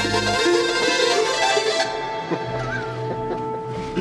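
A live band playing together: a full, loud chord for about the first two seconds, thinning out to held notes after.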